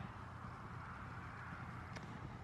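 Faint, steady outdoor background noise with a low rumble.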